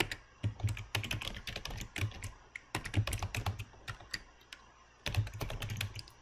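Typing on a computer keyboard: quick bursts of keystroke clicks, with a short pause a little before the end.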